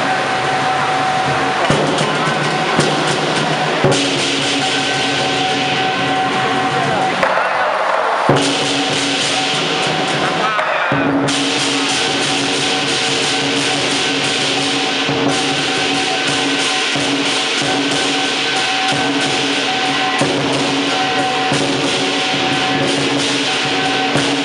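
Chinese lion dance music of drum, cymbals and gong, playing continuously.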